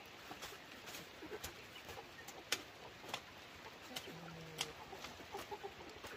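Chickens clucking, with scattered sharp clicks and taps throughout, the loudest about two and a half seconds in.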